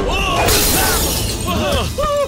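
A glass bottle smashing about half a second in, with a short burst of breaking-glass shatter.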